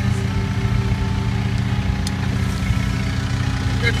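Komatsu mini excavator's diesel engine running steadily.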